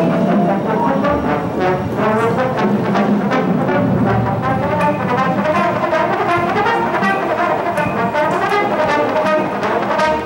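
Marching band playing: the brass section carries sustained chords and melody over steady percussion strikes.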